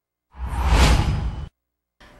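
A news-bulletin transition whoosh: a single sweep with a deep low rumble underneath, lasting about a second. It swells in shortly after the start and cuts off suddenly.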